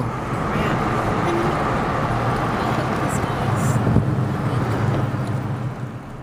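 Steady road and engine noise inside a moving car's cabin, a low drone with tyre rumble, fading near the end.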